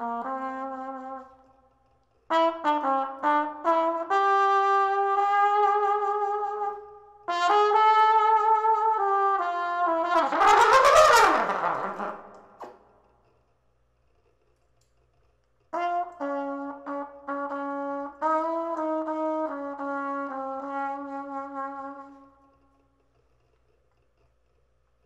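Solo brass music with a trumpet-like sound, played in short melodic phrases separated by pauses. About ten seconds in there is a loud, rough swell whose pitch slides up and down. The playing stops a second or so before the end.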